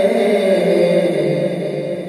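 A man's voice chanting through a microphone, drawing out one long note that slowly falls in pitch.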